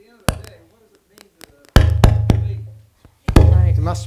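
Heavy thumps of a microphone being handled through the room's PA: three loud knocks about a second and a half apart, each of the later two followed by a low boom that dies away, with a few lighter taps between.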